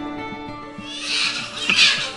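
Newborn baby crying, starting about a second in and growing louder, over soft acoustic guitar music.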